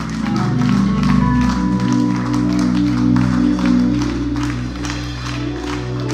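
Live church band playing: sustained keyboard chords that change every second or so over a steady bass line, with short, sharp percussive hits scattered through.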